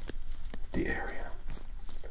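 Alcohol wipe rubbed over a pimple practice pad by a gloved hand, a soft wiping sound, with a soft-spoken, half-whispered voice over it.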